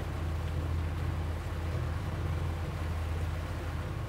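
A boat's outboard engine running steadily at low speed, a low even hum, while the boat makes a slow turn.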